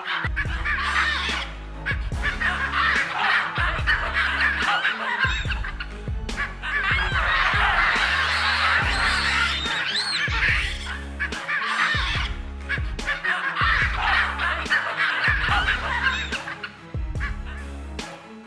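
Background music with a steady bass line, mixed with a troop of baboons calling and screaming over one another, busiest in the middle.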